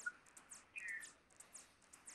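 Near silence: a quiet pause in a phone-in call, with one faint, short falling chirp about a second in.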